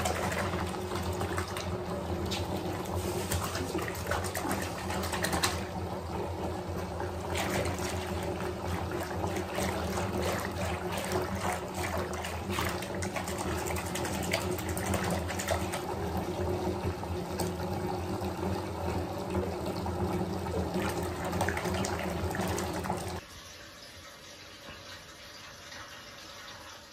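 Water running into a bathtub: a steady rush with a low hum under it. It cuts off suddenly about 23 seconds in, leaving a much quieter background.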